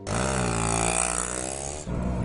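Auto-rickshaw engine revving: a rough engine note starts abruptly, climbs in pitch and eases back, then drops suddenly near the end to a steadier, lower running note.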